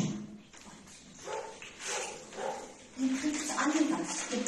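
Dogs barking in the background, mixed with indistinct voices, in a few short bursts and a louder stretch near the end.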